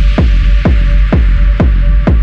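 Techno track in a DJ mix: a steady four-on-the-floor kick drum at about two beats a second, each kick dropping in pitch, over a held bass and sustained synth tones.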